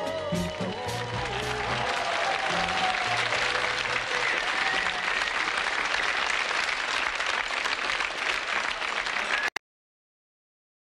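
Studio audience applauding and cheering as the last notes of the pop song die away. The applause cuts off abruptly near the end.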